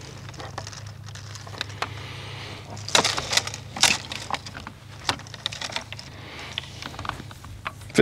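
Insulated electrical cables scraping, rattling and ticking against each other and a PVC conduit fitting as they are fed into the conduit, with a few sharper knocks about three and four seconds in. A steady low hum runs underneath.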